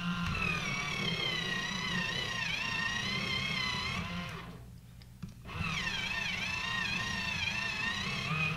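Small electric pencil sharpener's motor whining as it sharpens a colored pencil, its pitch wavering under the load of the pencil. It runs for about four seconds, stops briefly, then runs again for about three seconds.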